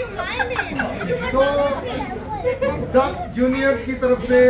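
Several people talking at once: overlapping party chatter in a busy room.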